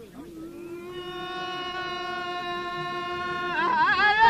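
A man's voice holding one long, steady high sung note for about three seconds, then breaking into a wavering, ornamented line near the end, in traditional Amazigh folk singing. The drumming stops as the note begins.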